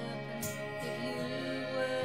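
Slow acoustic-guitar ballad with a woman singing held, sustained notes over the guitar.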